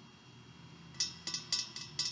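A near-silent pause, then from about a second in a run of light, sharp clicks or taps, about four a second.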